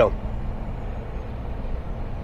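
Diesel engine of a bitrem (B-double) truck pulling up a mountain grade: a steady low drone with road noise.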